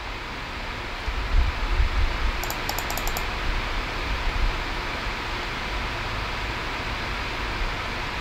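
Steady hiss of a computer fan, with a quick run of about six faint clicks about two and a half seconds in and a few low thumps in the first few seconds.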